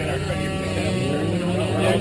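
People talking in the background, over a steady low rumble.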